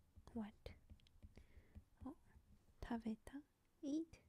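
A woman whispering a few short words close to the microphone, with light clicks of a stylus tapping on a tablet's glass screen between them.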